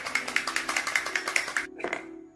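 Correction pen being shaken, the mixing ball inside rattling in quick, even clicks, about seven a second, which stop near the end.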